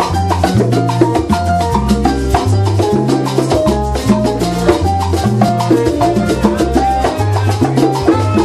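Live salsa band playing, with keyboard, congas and a bass line over a steady percussion beat.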